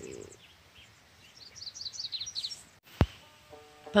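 A small bird sings a quick run of about ten high, downward-sliding chirps, lasting about a second. A sharp click follows, and banjo music starts just before the end.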